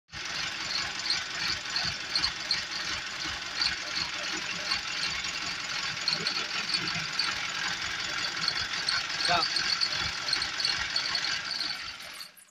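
An engine running steadily, with low uneven pulses and a rhythmic high ticking about three times a second over it; the sound stops abruptly at the very end.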